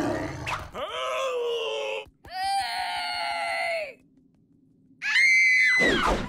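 Cartoon cockroach characters' wordless voices: a short low growl, then two long drawn-out yells, a brief silence, and a shrill high-pitched scream near the end.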